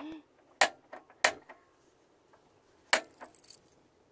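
Three sharp clicks from the ignition of a camper van's two-burner LPG hob as the burner under an Omnia oven is lit, the last click followed by a short hiss as the gas catches.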